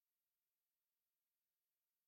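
Near silence: digital silence with only a faint steady hiss.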